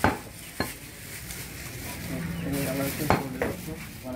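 A heavy cleaver chopping goat leg meat on a round wooden log block: four sharp chops, two about half a second apart at the start and two more close together near the end.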